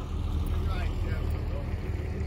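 A vehicle engine idling with a steady low rumble, with faint voices in the background.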